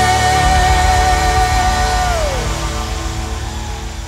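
A live worship band's closing chord rings out and fades, with acoustic guitars and keyboard. A held high note slides down about two seconds in.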